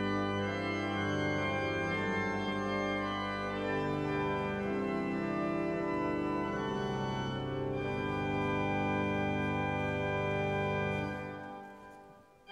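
Church organ playing slow, sustained chords, dying away near the end.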